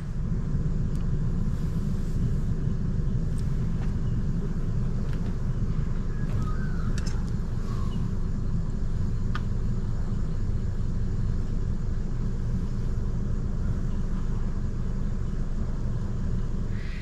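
Isuzu D-Max ute's diesel engine idling, a steady low rumble, with a couple of faint clicks in the middle.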